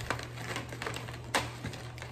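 Cardboard marker box being handled and opened: soft rustles and small clicks, with one sharper click a little past halfway.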